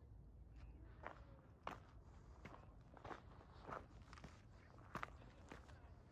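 Footsteps crunching on gritty sandstone and loose rock at a steady walking pace, about eight steps, faint over a low steady rumble.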